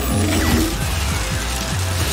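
Cartoon sound effect of a glowing mystical drill spinning and whirring, over action music with a pulsing low bass.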